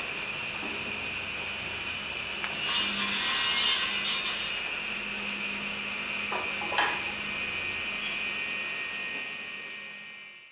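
Woodworking noise: a tool scraping or sawing wood over a steady high-pitched whine, louder for a moment about three seconds in, with a couple of knocks near seven seconds, fading out at the end.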